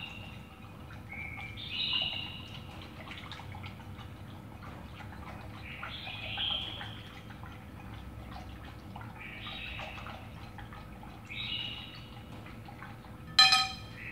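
Chopsticks stirring sweetened condensed milk and hot water in a glass bowl: a run of soft clicks and liquid swishing, quiet throughout. A bird chirps in short calls several times in the background, and a single sharp ringing clink sounds near the end.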